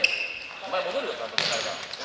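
A futsal ball kicked once on a gymnasium floor, a single sharp impact about a second and a half in, with faint players' voices around it.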